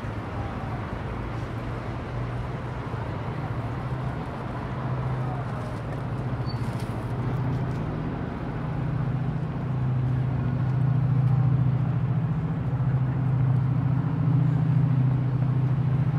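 Street traffic with a heavy vehicle's engine running nearby: a steady low hum that grows louder about halfway through.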